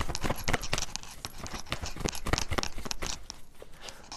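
A deck of tarot cards being shuffled by hand: a run of quick, irregular clicks and slaps of card on card.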